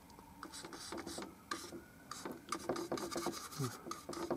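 A paintbrush working paint in a quick run of short, scratchy strokes, starting after a brief quiet moment.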